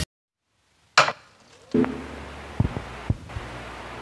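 A break in the background music: about a second of dead silence, then a sharp click and a faint steady low rumble with a few light knocks, the ride noise inside a moving vehicle.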